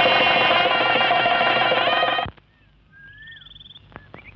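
A loud sustained chord of many tones, held about two seconds and cut off abruptly. Faint bird chirps follow.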